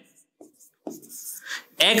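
Marker pen writing on a whiteboard: a short run of faint scratchy strokes starting about a second in.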